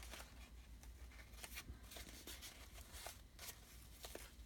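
Faint rustle of kraft paper and twine, with a few soft ticks, as a string tie is worked loose from a rolled paper bundle.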